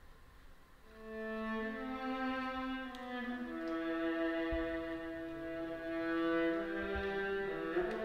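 String orchestra (violins, cellos and double bass) coming in about a second in after a pause and playing a slow passage of long held chords that shift from one to the next.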